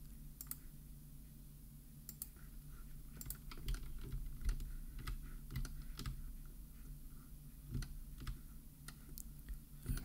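Faint, irregular clicks of a computer mouse and keyboard being operated, a few at a time, over a low steady electrical hum.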